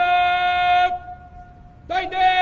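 Parade commander shouting drawn-out words of command: a long call held on one high pitch that breaks off about a second in, then a second long call starting near the end.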